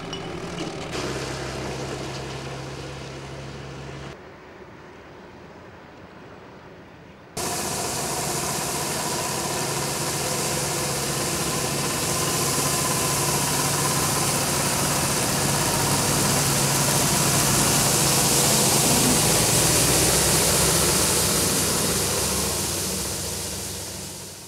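Street-sweeping truck at work: its engine running under a steady hiss from the rotating brush and water spray. The sound comes in suddenly about seven seconds in, grows louder, then fades out near the end. Before that there is a quieter vehicle engine hum.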